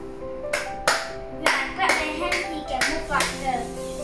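A child's hand claps, about seven in a row over roughly three seconds, with background music underneath.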